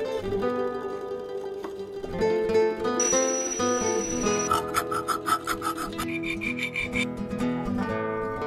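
Western-style plucked guitar music throughout. About three seconds in, an electric drill with a steady high whine bores through a metal plate for about a second and a half. It is followed by a few seconds of rhythmic rasping strokes on the metal, a few strokes a second.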